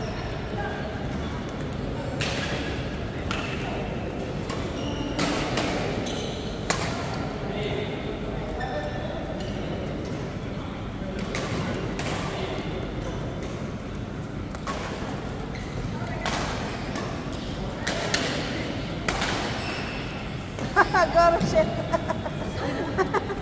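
Badminton rackets striking a shuttlecock in a rally: sharp knocks, irregularly spaced about one to two seconds apart, echoing in a large sports hall over background voices.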